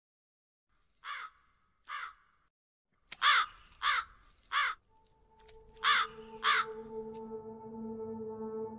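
Crows cawing: two fainter caws, then three loud harsh caws in quick succession, then two more. About five seconds in, a steady ambient music drone with several held tones sets in beneath them.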